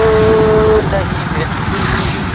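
A vehicle horn sounding once, a steady tone held for about a second at the start, over constant road-traffic noise.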